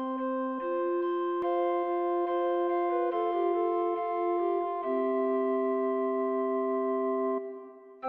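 Renaissance four-part chanson played instrumentally in a recorder-consort arrangement: several parts moving together in even, sustained tones with no attack noise. A held chord ends the phrase and dies away near the end.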